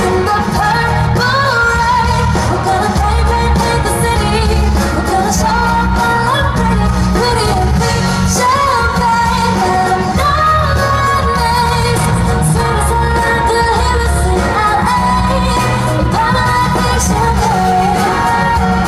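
Live pop song: a female vocalist singing a wavering melody over a loud backing track with heavy pulsing bass, heard from the audience of an arena through a phone's microphone.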